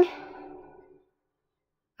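A faint tone fading out over the first second, then complete digital silence.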